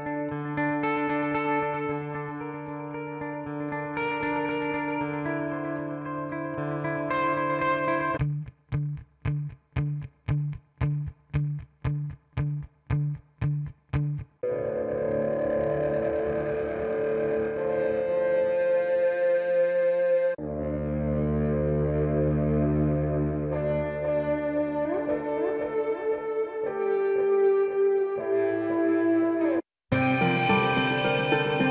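Ambient, cinematic guitar sample loops from the Big Fish Audio Impulse library played one after another: sustained chords first, then a chopped part pulsing about twice a second from about 8 to 14 seconds in, then fuller layered guitar parts, cut off briefly just before the end.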